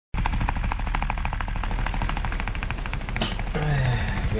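Helicopter rotor chopping in a fast, even beat of about five or six pulses a second over a low rumble, stopping a little after three seconds in. A low tone that falls in pitch follows near the end.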